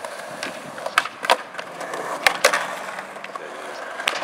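Skateboard wheels rolling on concrete, with a few sharp clacks of the board, a pair about a second in and another pair just past two seconds.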